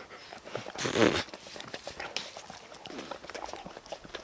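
An animal licking and sniffing close to the microphone: many small wet clicks, with one louder breathy burst about a second in.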